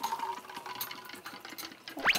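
Orange juice glugging out of a large plastic bottle as it is tipped and poured, a rapid, uneven run of gulps as air bubbles back into the bottle.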